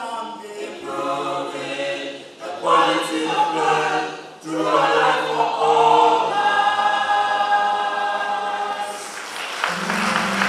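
A mixed vocal group of men and women singing in close harmony, with long held chords in phrases that pause briefly about two and a half and four and a half seconds in. Near the end the singing gives way to a different sound.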